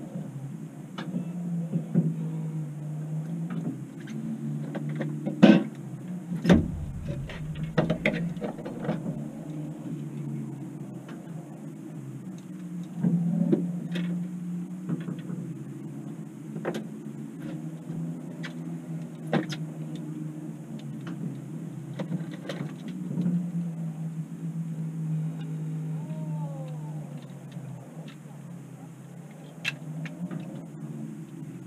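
A boat motor running with a steady low hum, with scattered sharp knocks and clatter on the boat as a bass is handled.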